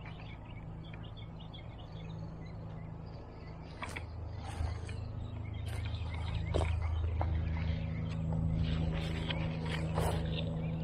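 Outdoor ambience of small birds chirping, mostly in the first half, over a steady low hum that gets louder in the second half. A few sharp clicks come in the middle.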